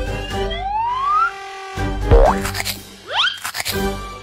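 Cartoon sound effects over children's background music: rising whistle-like glides in the first second, a sudden springy pitch sweep, the loudest moment, a little after two seconds in, and another quick rising glide just after three seconds.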